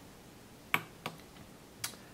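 Push-buttons on an Open DSKY replica keypad being pressed while keying in a countdown time: three short, separate clicks, the first about three-quarters of a second in and the last near the end.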